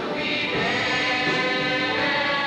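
High school choir singing, holding sustained notes.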